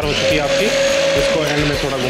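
REDMOND hand blender's motor running in a bowl of tomato and cashew sauce, blending it smooth: a steady whine that fades out about one and a half seconds in.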